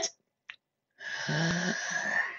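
A person's breathy, rasping vocal noise, starting about a second in and lasting about a second and a half, with a short low voiced part in the middle.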